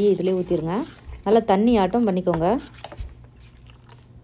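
A woman speaking for the first two and a half seconds. After that come faint soft sounds of a steel ladle stirring thin neer dosa batter in a steel pot.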